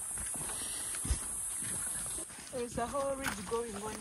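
Footsteps walking on a soft, sandy path, with scattered small knocks and one low thump about a second in; quiet voices start past halfway.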